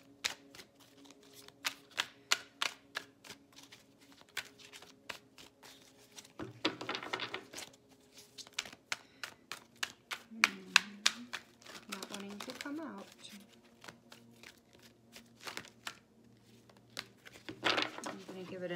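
A tarot deck being shuffled by hand: a long run of quick, crisp card clicks and slaps, with a short rushing riffle of cards about six and a half seconds in.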